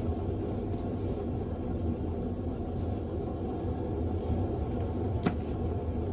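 A steady low rumble of background noise, with a few faint ticks and one sharp click about five seconds in from metal tweezers handling a small paper word label.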